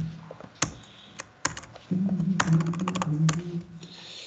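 Computer keyboard keys struck, a few separate keystrokes and then a quick run of them, as text is deleted in a terminal editor. A low hum runs beneath the second half.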